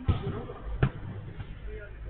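Two sharp thuds of a football being struck, the second about three-quarters of a second after the first and the louder of the two, over a steady low rumble.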